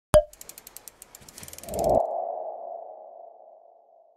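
Logo sting sound effect: a sharp click, then a quick run of light ticks. A swell builds to a peak about two seconds in and leaves a ringing tone that fades away.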